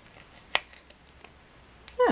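A single sharp click about half a second in from a hand-posed action figure's joint or plastic body being handled, followed by a few faint handling ticks.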